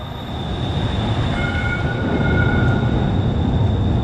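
METRORail light rail train passing close by, a steady rumble that grows louder as it goes by, with thin higher tones above it in the middle.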